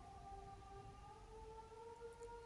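Faint soft background music: a few held pad tones that drift slowly in pitch, like a gently shifting chord.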